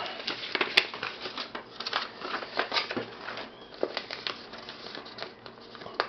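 Paper leaflets and a plastic bag rustling and crinkling as they are handled, a steady run of small irregular crackles and ticks.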